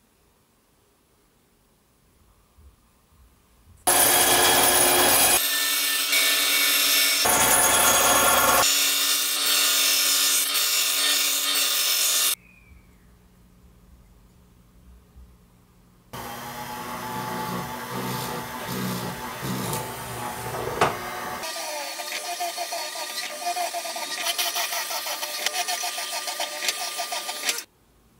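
Workshop power tools in two loud stretches that start and stop abruptly: a band saw cutting a small plate, then a drill press drilling holes in it.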